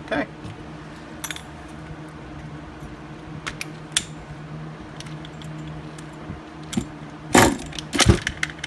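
Light metallic clicks and clinks from hands working on a nitro RC car and its glow igniter: a few scattered ones, with a louder clatter near the end, over a steady low hum.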